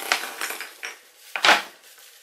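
Handling noise from a plastic packet and Christmas tree decorations: a few light clicks and rustles, then one louder, brief noise about one and a half seconds in.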